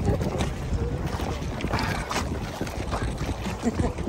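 Wind buffeting the microphone in a steady rumble over shallow sea water, with scattered small splashes and lapping of water around people wading.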